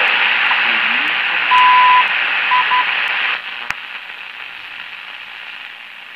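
Shortwave radio hiss and static from the repaired speaker of a 1937 Philco 37-640, tuned to the CHU Canada time-signal station. A half-second 1 kHz beep comes about a second and a half in, then two short beeps. The hiss drops off sharply about three and a half seconds in.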